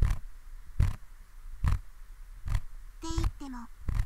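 Ear-pick (mimikaki) scraping sound effect in the left ear of a binaural ASMR recording: short scratchy strokes repeating steadily about once a second.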